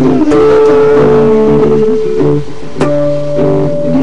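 Rock music in an instrumental stretch: guitar with bass playing long held notes, with a couple of sharp hits.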